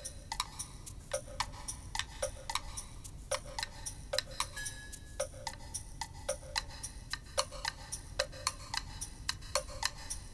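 Background music cue built on steady clock-like ticking, several clicks a second, many with a short wood-block knock beneath them, and a brief high held tone near the middle.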